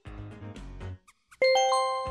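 A short burst of music, then a bright bell-like chime about one and a half seconds in that rings on and slowly fades. It is the cue for a page turn.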